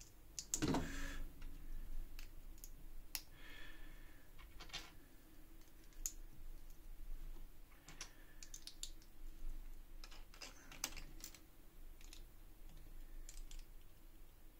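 Small plastic Lego bricks clicking and knocking as they are handled and pressed together by hand: scattered light clicks, a few louder near the start and about ten seconds in.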